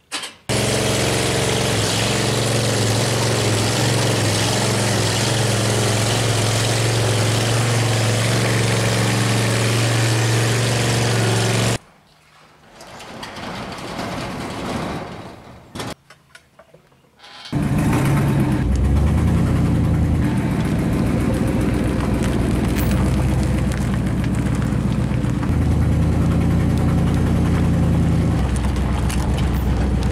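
A pickup truck's engine running steadily for about eleven seconds and stopping abruptly. After a few seconds of quieter sounds it comes back as the truck tows a loaded trailer, a steady drone that shifts up and down in pitch a few times with speed.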